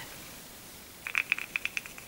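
Broken-out pressed eyeshadow rattling loose inside a small round plastic H&M eyeshadow compact as it is shaken: a quick run of light clicks, about eight a second, starting about a second in. The rattle is the sign that the pressed powder has broken out of its pan.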